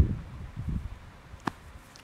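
A laugh tails off at the start, then faint rustling as a man moves about in long grass. A single sharp click comes about one and a half seconds in.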